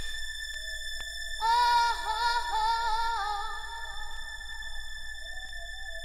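A trance track in a beatless breakdown: steady high synth tones hold throughout. A wavering, voice-like synth line comes in about one and a half seconds in and fades out by about three seconds.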